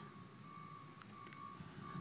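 Quiet room tone with a faint, steady high-pitched tone that breaks off briefly a few times.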